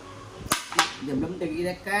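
A xiangqi piece is moved and set down on a wooden board with two sharp clacks about a third of a second apart.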